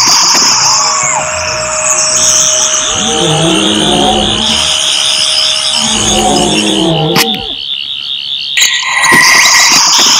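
Sonic screwdriver sound effect: several high whines held together, with a pulsing warble joining about two seconds in and running until about eight and a half seconds. Two lower swooping sounds come about three and six seconds in.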